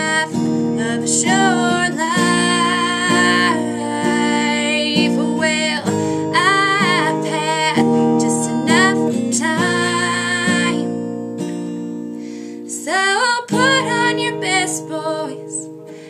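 A woman singing a slow ballad over a strummed acoustic guitar, in several phrases with short breaks between them. The sound thins out for a moment about twelve seconds in, then voice and guitar come back.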